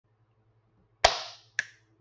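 A single sharp hand clap about a second in, dying away over about half a second, followed by a softer, shorter smack half a second later.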